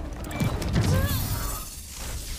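Sound effects from a TV episode's soundtrack: a loud mechanical clattering with a rushing whoosh that builds about half a second in and fades by the end.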